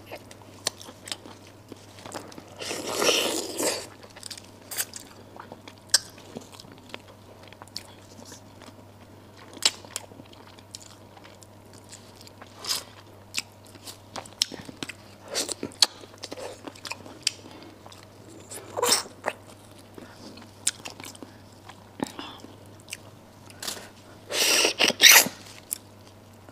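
Close-miked eating of braised duck heads: lips sucking and slurping meat off the bones, with scattered sharp clicks and crunches of chewing and gnawing on small bones. Two longer slurps, about three seconds in and near the end.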